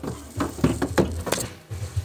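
Handling noise under the car: a scatter of irregular light clicks and knocks over a faint low rumble, as a work light and camera are moved about.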